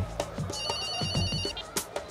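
Mobile phone ringing: a high, warbling electronic ring that starts about half a second in and lasts about a second, over background music with a steady soft beat.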